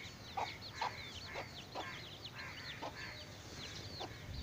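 A domestic hen with her brood of chicks: the chicks peep continuously in quick falling whistles, several a second, while the hen gives short low clucks about every half second.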